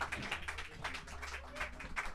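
Light applause from a small audience: many scattered hand claps, fairly faint.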